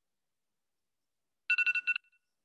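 A countdown timer's alarm going off: a fast run of short, high electronic beeps, about a dozen a second, starting about one and a half seconds in. It signals that the five seconds of drawing time are up.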